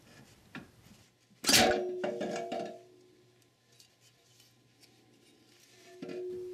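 Ford E4OD transmission center support jerked loose and pulled up out of the aluminium case: one sharp metallic clank about a second and a half in that rings on for a second or so, with a faint click before it.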